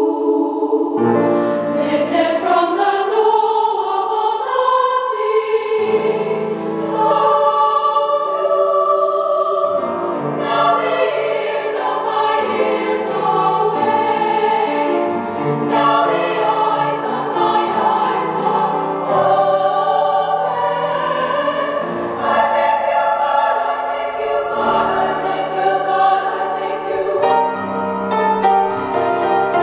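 Women's choir singing, many voices holding sustained harmonies that shift from chord to chord.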